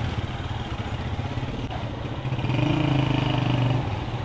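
Motorcycle engine running while the bike is ridden, a steady hum that grows louder about halfway through as the rider opens the throttle, then eases off near the end.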